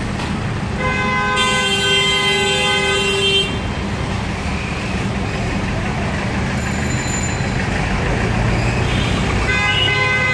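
Street traffic with engines running steadily, cut by a long vehicle horn blast starting about a second in and held for nearly three seconds; another horn starts near the end.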